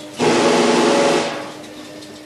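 Imhof & Mukle 'Lucia' orchestrion sounding the closing chord of a tune: a loud full chord held for about a second, then dying away with one low note ringing on.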